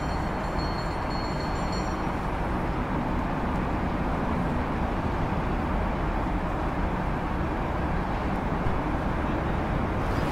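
Added street-traffic ambience: a steady rumble of vehicle traffic, with faint thin high tones during the first two seconds.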